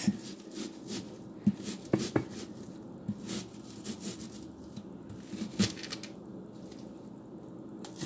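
Chef's knife cutting into an onion on a plastic cutting board: scattered crisp clicks and knocks as the blade slices through the onion and taps the board, with quiet gaps between them.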